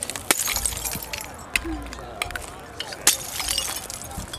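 Glass breaking and crunching, with shards clinking: a run of sharp cracks, the loudest about a third of a second in and again about three seconds in.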